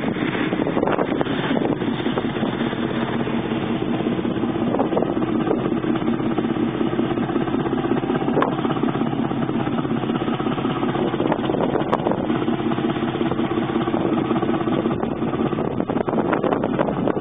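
The three-cylinder two-stroke diesel (Wichmann 3ACA) of the motor vessel Grytøy running steadily under way, with water rushing along the hull.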